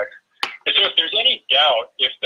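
Speech only: a man talking over a call connection, the voice thin and cut off in the highs like a telephone line.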